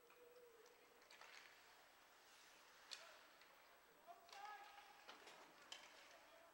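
Near silence: faint ice-rink sound from a hockey game in play, with a few faint clicks of sticks or skates and a faint distant call about four seconds in.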